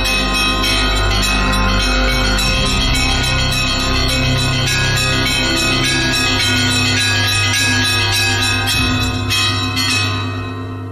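Programme theme music built on ringing bell chimes over a sustained low bass, at a steady level.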